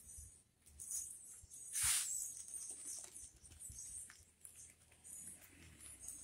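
Plastic bag of hydrated lime rustling and crinkling as it is picked up and handled, with one louder rustle about two seconds in.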